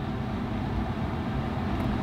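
Steady low hum of room background noise, with no distinct events.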